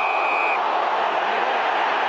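Large stadium crowd noise throughout, with a single steady umpire's whistle blast that cuts off about half a second in.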